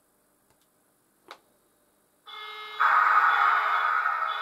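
An HO-scale model locomotive's sound decoder comes back on after a power dropout. There are about two seconds of silence with one faint click, then a steady recorded diesel engine sound starts from the loco's small speaker and grows much louder about half a second later.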